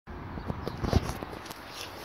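Handling and movement noise: rustling with several light knocks, the loudest just before a second in.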